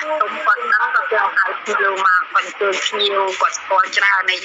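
Speech only: a person talking in Khmer without pause.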